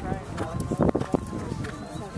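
Indistinct voices talking, with a few dull thuds scattered through.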